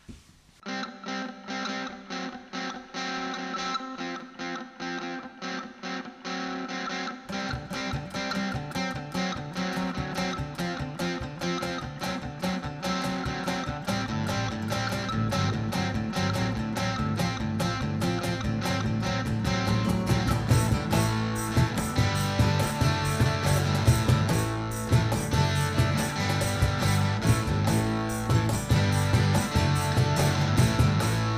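Band intro with no singing: a steel-string acoustic guitar plays alone at first, a cajon beat comes in about seven seconds in, and a bass guitar joins about seven seconds later, the playing growing a little louder towards the end.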